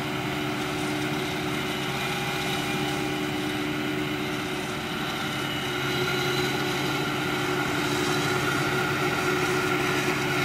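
Krone Big X 650 self-propelled forage harvester running steadily under load while chopping maize, a continuous drone with several held tones. A Case IH Puma tractor with a forage wagon drives alongside, and the sound grows a little louder about six seconds in as the harvester starts blowing chopped maize into the wagon.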